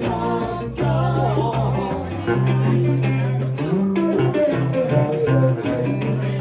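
An acoustic band playing live: strummed acoustic guitar and fiddle over a steady bass line that moves from note to note about once a second.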